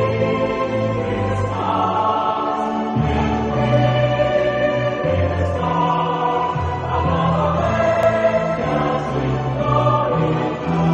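Choir singing a Marian hymn, held sung notes over an instrumental accompaniment whose bass line moves about once a second.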